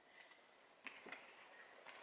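Near silence: room tone, with a couple of faint clicks about a second in.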